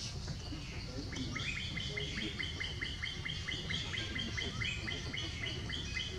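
A bird calling in a quick, even series of short high chirps, about four a second, starting about a second in and lasting several seconds, over a low steady background rumble.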